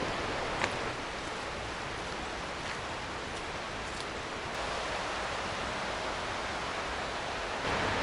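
Steady rushing of running water from a forest stream, an even hiss with a couple of faint ticks.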